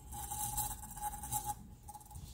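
A cup turner's small motor hums steadily as it rotates the tumbler. For about the first second and a half, fingertips rub a soft hiss off the wet epoxy coating on the turning cup.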